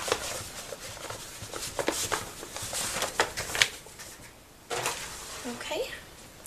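A craft mat being picked up and moved off a cutting mat: scattered rustles and light knocks of handling, with a quieter pause about four and a half seconds in.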